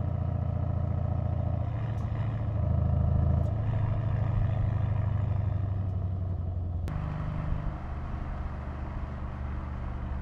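Mercedes-AMG E 63 S Estate's twin-turbo V8 running at a fairly steady pitch while the car drives, a little louder around three seconds in. The note changes abruptly about seven seconds in and carries on steadily.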